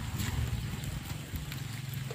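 Footsteps and handling rumble on the microphone as the camera is carried forward, with a few faint clicks.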